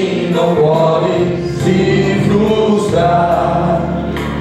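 Gospel worship song: a man sings into a microphone, with other voices and a steady musical accompaniment underneath.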